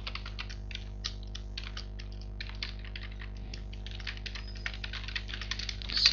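Computer keyboard being typed on: an irregular run of key clicks, over a steady low hum.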